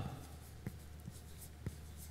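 A marker writing a word on a blackboard: faint scratching with a few light ticks.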